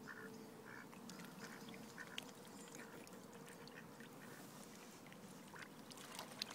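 Faint, short quack-like waterfowl calls repeating every half second to a second, over a faint steady hum.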